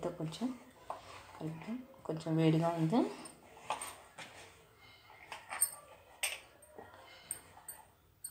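Hands squeezing and kneading crumbly dough in a plastic bowl, with scattered light clicks and scrapes in the second half. A voice sounds briefly in the first three seconds.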